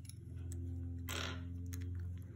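Faint handling of small plastic Lego minifigure parts as a head is pressed onto a torso, with a few light clicks near the end, over a steady low hum.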